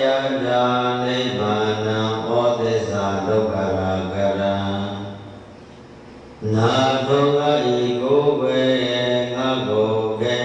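A Buddhist monk's single male voice chanting a recitation into a microphone in long, held, sing-song phrases. The chant breaks off about five seconds in and resumes about a second later.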